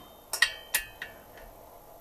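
Three sharp metallic clinks of a steel socket wrench against the cylinder head nuts, each with a short ring, followed by a fainter tap.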